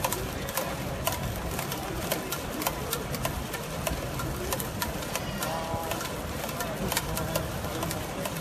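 Ballpark crowd in the stands clapping over a steady crowd hum, with sharp, irregular claps several per second.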